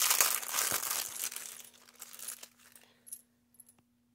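Small clear plastic zip bag crinkling as it is handled and opened, fading out after about two and a half seconds. Then a few light clinks near the end as small metal bat charms tip out into a palm.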